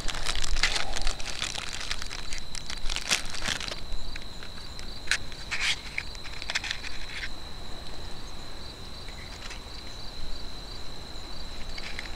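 Plastic and paper ration packets and a cardboard matchbox crinkling and rustling as they are handled, with a dense run of crackles in the first few seconds and a few more a little after the middle. A steady high insect trill, like a cricket, runs underneath.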